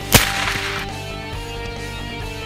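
A single shot from a CZ 452 bolt-action rimfire rifle, sharp and loud, just after the start, with a brief ringing echo that dies away within about a second. Electric guitar music plays underneath.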